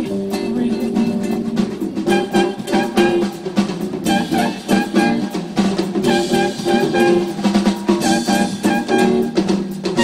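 A live band playing an instrumental passage, led by acoustic guitar over congas, drum kit and upright bass, with no singing.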